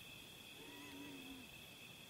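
Faint, steady chirring of crickets, with one short, faint animal call with a wavering pitch in the middle.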